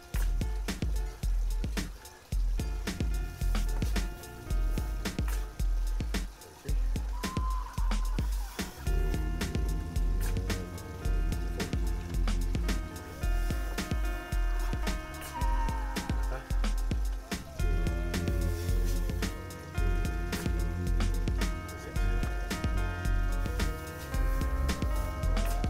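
Background music with a steady beat and heavy bass; held melody notes come in about nine seconds in.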